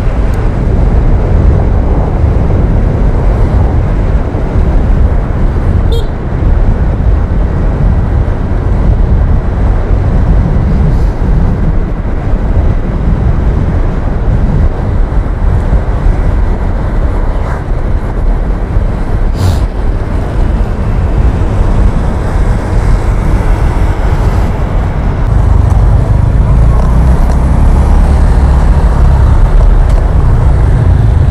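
Riding a motor scooter through traffic: a loud, steady wind rush on the action camera's microphone over the scooter's running engine and the surrounding road traffic.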